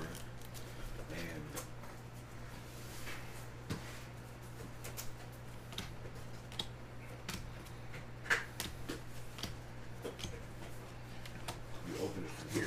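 2022 Topps Formula 1 trading cards being handled and flipped through one at a time from a freshly opened pack: light, scattered clicks and slides of card stock. A steady low hum runs underneath.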